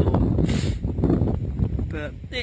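Wind buffeting the microphone, a steady low rumble, with a short hiss about half a second in.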